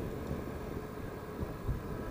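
Motorcycle riding along the road, its engine and the wind making a steady low rumble, picked up through a helmet headset microphone.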